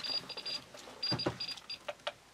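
Handheld Geiger counter beeping in quick, irregular clusters of short high-pitched beeps as it registers counts from a lit UVC lamp held close to it, with a couple of light handling knocks.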